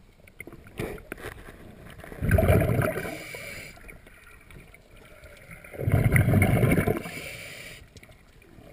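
Scuba regulator exhaust bubbles from a diver breathing out underwater, heard close: two bubbling bursts, each about a second long, about two seconds in and again near six seconds, with a quieter hiss between breaths.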